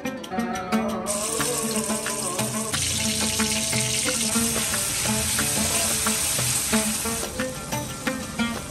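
Chopped onions sizzling in hot oil in an aluminium pan, a steady hiss that starts about a second in and grows louder near three seconds, over background music.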